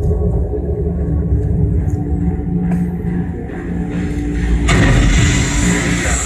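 Tense film score with a deep, steady rumble and held low tones. Near the end a loud rushing swell of noise rises over it and holds.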